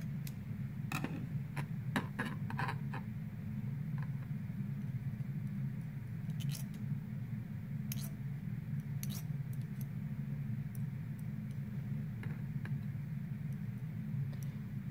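Scattered light clicks and taps of a knife blade, metal forceps and a glass test tube as finely chopped apple is scraped into the tube, over a steady low hum of the room.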